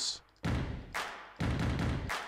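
Stomp-and-clap sample previewing, church-style reverb: a heavy boot stomp, a sharp hand clap, then another stomp, each with a long echoing tail.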